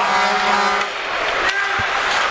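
Arena goal horn sounding one steady low tone that stops about a second in, with crowd cheering going on under it and after it: the signal of a home-team goal.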